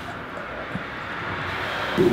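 Steady background traffic noise, slowly getting louder.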